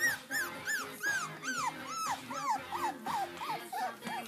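Papillon puppy giving a quick series of short, high-pitched cries, about three a second, each one rising and falling, the cries getting lower toward the end. Music plays underneath.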